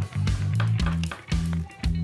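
Background music with a steady beat and low sustained bass notes.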